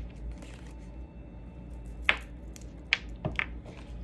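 A deck of tarot cards being picked up and handled over a stone tabletop, with a few sharp taps and clicks in the second half, under a low steady hum.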